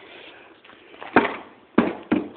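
An orange toy forklift being struck on concrete: two sharp, short knocks, the first about a second in and the second near the end.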